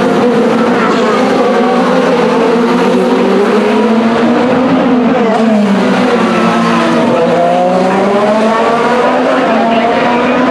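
IndyCar field's twin-turbocharged 2.2-litre V6 engines running hard past the fence. It is a loud, continuous sound of many overlapping engine notes, rising and falling in pitch as cars accelerate and go by.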